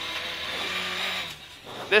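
Rally car engine and road noise heard from inside the cabin, running steadily, then dropping in level for a moment about a second and a half in.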